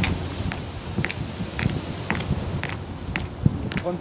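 Hard-soled dress boots striding on paving, sharp heel strikes about twice a second, over a low outdoor rumble.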